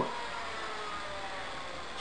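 Steady background noise with a faint, even hum and no distinct events.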